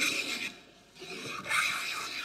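Worn wooden smoothing plane used as a scrub plane, its wide throat hogging thick shavings off a board: two rasping strokes, a short one at the start and a longer one from about a second in.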